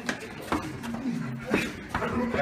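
Low voices of a group of teenagers, broken by three short, sharp hits: one at the start, one about half a second in, and one near the end.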